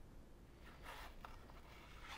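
Near silence: room tone with faint soft handling sounds as a round metal cutter is pressed through rolled fondant on a plastic cutting board.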